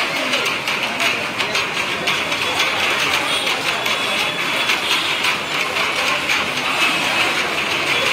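Dense ambience of a crowd walking: a continuous clatter of many footsteps and shuffling.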